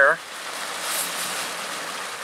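Steady rush of water from a small stream cascading over rocks, with a brief soft rustle of plastic packaging about a second in.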